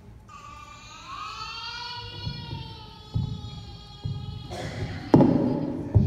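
A toddler's long wailing cry, held for about four seconds, played from a video into a large hall. Dull thumps come in during the second half, the loudest about five seconds in.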